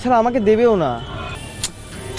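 A man's voice speaking for about the first second, then a quieter stretch of background with a brief click.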